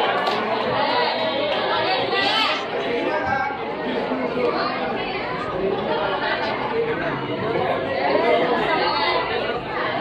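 Many people talking at once in a large hall: steady overlapping crowd chatter with no single voice standing out.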